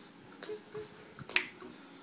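A single sharp finger snap about a second and a half in, over faint music.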